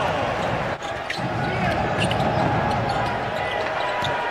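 Arena crowd noise with a basketball being dribbled on the hardwood court.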